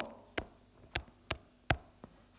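Four light, sharp taps on a hard surface, a few tenths of a second apart, over a faint low hum.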